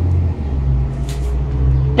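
A steady low rumble, with a brief soft hiss about a second in.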